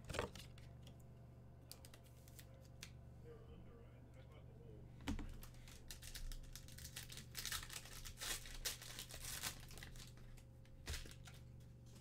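Foil trading-card pack being torn open and crinkled by hand. The rustling starts about five seconds in and is busiest in the middle, with a sharp click near the end.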